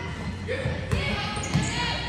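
A basketball bouncing on a hardwood gym floor during live play, as a series of low thuds, with a couple of sharp clicks and scattered voices of players and spectators.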